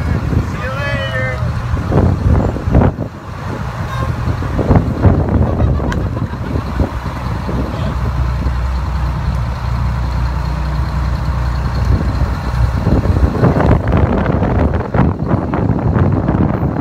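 Fire engine's engine running with a steady low rumble as it rolls slowly past. In the last few seconds it grows into a louder, noisier rush as the truck draws close. A voice is heard briefly at the start.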